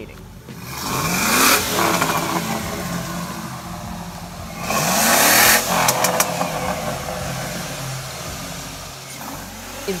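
Chevy SSR's V8 revved twice through its exhaust, rising in pitch about a second in and again, louder, around five seconds in, then settling back to a steady idle.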